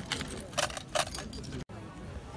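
Metal costume jewellery jingling and clinking in a box, in two short jangles about half a second apart. The sound cuts off abruptly near the end.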